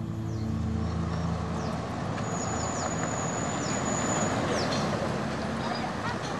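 Held low music notes dying away in the first couple of seconds, over a steady rushing background noise. A thin high whistle sounds for about two seconds in the middle, with a few short falling chirps.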